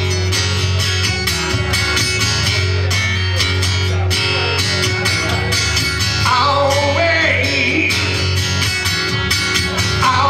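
Acoustic guitar strummed in a steady rock rhythm, played live. A wavering sung line comes in about six seconds in.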